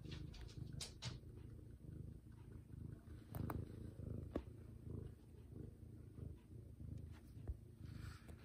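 Domestic cat purring close to the microphone: a low rumble that swells and fades with each breath, about once a second, with a few faint clicks.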